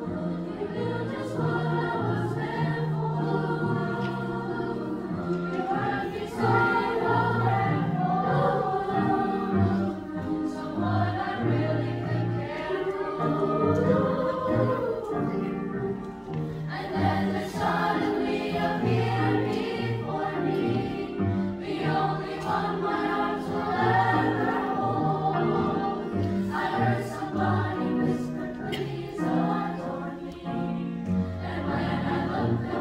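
A large youth choir singing a piece in parts with piano accompaniment.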